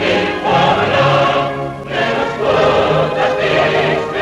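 A choir singing a Ukrainian revolutionary song in Ukrainian, with a brief breath between sung lines a little under two seconds in.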